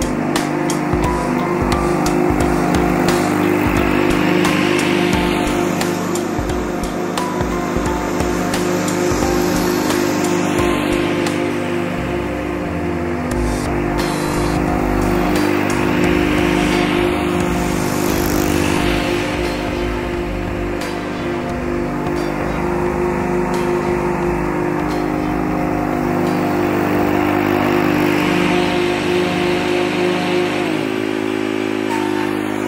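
Background music over a John Deere Sabre lawn tractor's engine running steadily while it mows.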